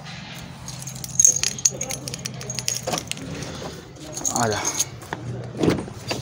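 Metal keys jangling and clinking in irregular bursts, a cluster from about a second in and another shorter one near the end, over a steady low hum.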